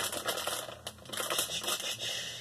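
Plastic meat packaging crinkling and rustling against the inside of a cardboard meal-kit box as it is handled, in irregular bursts.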